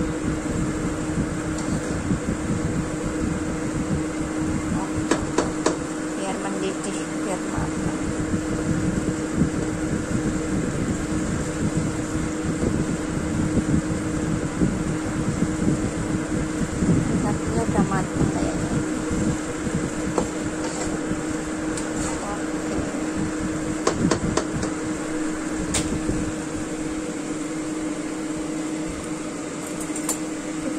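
A steady mechanical kitchen hum, with a nylon spatula stirring broth and noodles in a wok and a few light knocks against the pan.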